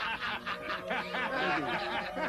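Hearty male laughter: a fast, unbroken run of short 'ha' bursts.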